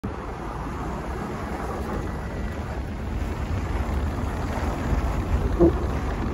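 Vehicle driving on a snow-packed road: a steady low rumble of tyres and engine that grows slightly louder toward the end.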